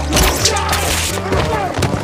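Police taser firing: a rapid, crackling run of electric clicks lasting most of two seconds, with thuds as the man it hits falls to the ground, over background music.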